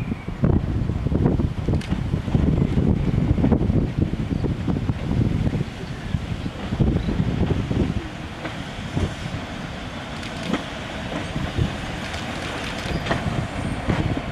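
British Rail Class 121 single-car diesel multiple unit approaching, its engine and wheels on the rails growing steadily louder as it nears, with a few sharp clicks near the end. Wind buffets the microphone, loudest in the first half.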